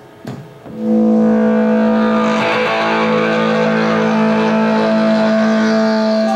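An electric guitar chord played loud through an amplifier, struck about a second in and then left ringing, held steady.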